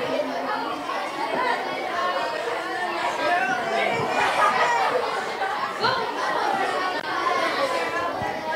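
Many students talking at once, each telling the same story aloud with projected voices, overlapping into a steady babble of chatter.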